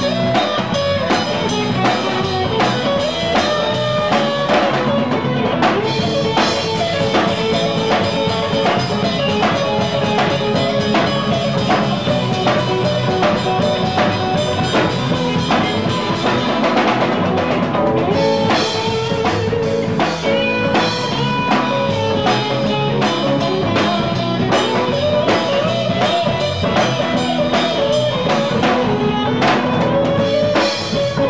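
Live rock band playing with electric guitars, bass guitar and a drum kit keeping a steady beat.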